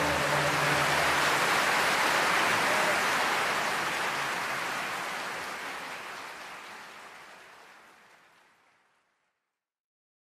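Audience applauding after the music's final chord dies away, steady for a few seconds, then fading out to silence.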